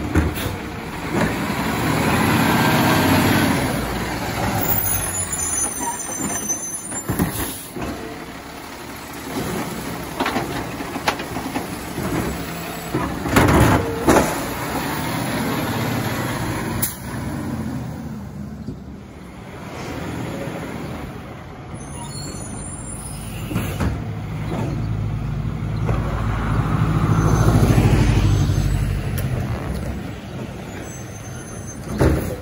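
Diesel automated side-loader garbage truck at work: the engine revs as the side arm lifts and dumps carts. Two sharp bangs come about halfway through, and air brakes hiss. Near the end the engine revs loudly again as the truck pulls up to the next stop.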